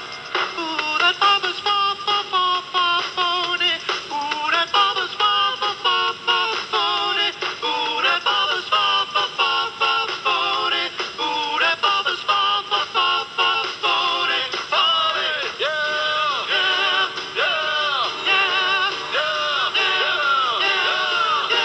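A man singing a song over instrumental backing, with vibrato on the long held notes in the second half.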